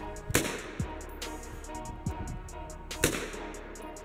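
Two 7.62 NATO rifle shots from an HK G3, one shortly after the start and one about three seconds in, each a sharp crack, over background music with a deep bass beat.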